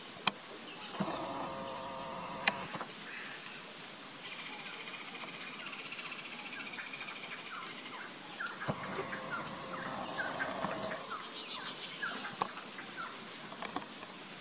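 Forest birds calling: two drawn-out harsh calls, one about a second in and one about halfway through, then a string of many short chirps in the second half, with a few sharp clicks early on.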